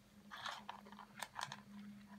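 A cat crunching dry kibble, a faint run of irregular crisp crunches.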